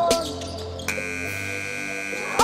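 Gymnasium game-clock buzzer sounding one long, steady electronic tone from about a second in, as the clock runs out. Hip-hop music plays underneath.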